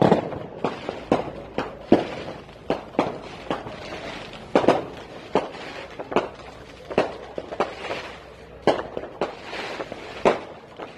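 Firecrackers going off in an irregular string of sharp bangs, about two a second, each with a short echoing tail.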